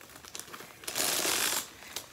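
Handling noise from a quilted bag and its metal chain strap: small scattered clicks and light chain clinks, then a brief rustle about a second in.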